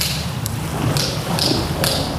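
Wind rumble on the microphone and choppy water around a small boat, with two sharp taps, one about half a second in and one near the end.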